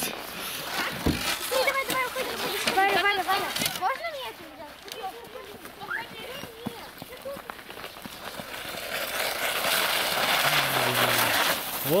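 High children's voices chattering and calling out in the first few seconds. Then, from about eight seconds in, a hissing scrape builds steadily as a child slides down a packed-snow slope on a plastic sled, loudest just as she reaches the bottom.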